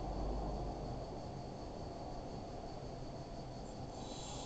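Quiet room tone: a steady low hiss and hum from a cheap webcam or PC microphone, with no distinct sound in it.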